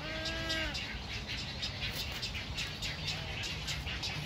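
Birds in a wading-bird nesting colony: one drawn-out, nasal, pitched call in the first second, a fainter short call near the end, and many short high chirps throughout.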